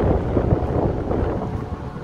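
Wind buffeting the microphone outdoors: an uneven low rumble that gusts and slowly eases off.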